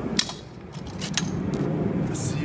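Folding mechanism of a Micro Downtown kick scooter clicking as it is folded: a sharp click just after the start and another about a second later.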